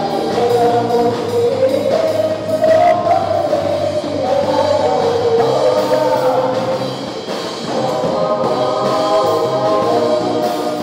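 A small group of singers on microphones singing a Tagalog worship chorus together, in sustained phrases, with live band accompaniment.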